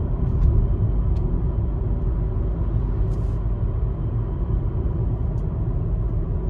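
Car driving along at road speed: a steady low rumble of tyre and engine noise, with a few faint ticks and a brief hiss partway through.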